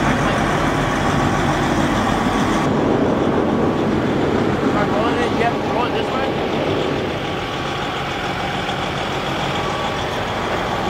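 Semi-truck diesel engine idling: a steady low rumble, with faint voices in the middle.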